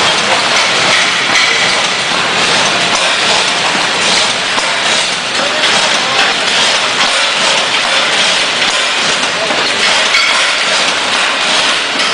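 Automatic packing-line machinery running: a loud, steady, dense mechanical noise with faint clicks and no clear rhythm.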